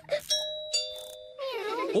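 Two-note doorbell chime, ding-dong: a higher note and then a lower one, each ringing on briefly before fading.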